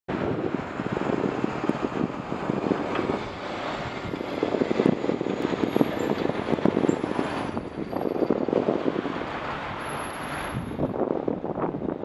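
Road traffic noise and irregular wind buffeting on the microphone of a camera moving along a bus lane beside slow traffic, with a truck close alongside around the middle.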